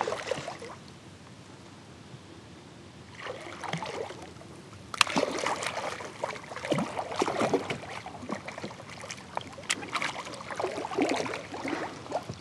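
Hooked channel catfish thrashing and splashing at the water's surface as it fights the line. There is a splash at the start and a short lull, then near-continuous irregular splashing from about five seconds in.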